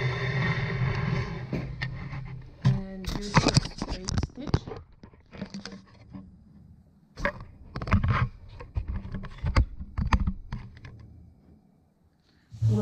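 Handling noise: a steady rustling rush for about two seconds, then scattered knocks and clicks at irregular times, fading away near the end.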